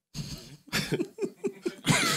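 Men laughing in a run of short, quick bursts, about five a second, growing louder near the end.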